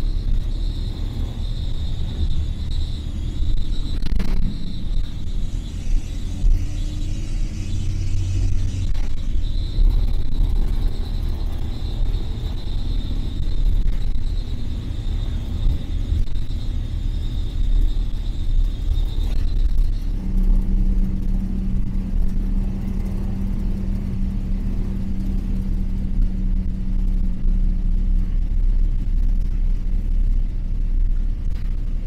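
LiAZ-4292.60 city bus under way, heard from inside the passenger cabin: a steady low rumble of engine and road. A thin high whine runs until about two-thirds of the way through, then a lower steady hum sounds for several seconds.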